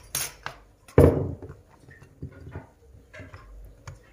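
A rolling pin pressed and rolled over pastry laid across fluted metal tart tins, so the tin rims cut through the dough, with scattered light knocks and clatter of the metal tins. The loudest knock comes about a second in.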